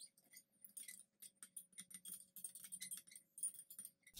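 Metal spoon stirring liquid in a glass measuring cup, faintly clinking against the glass in many quick, irregular ticks.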